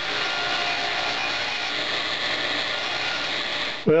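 Table saw running and cutting an angled slot into a small block of scrap wood, a steady even whine-and-rush that starts suddenly and cuts off just before the end.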